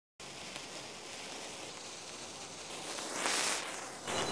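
Faint steady hiss that swells into a brighter fizzing rush about three seconds in: a lit hand-held firework spraying sparks.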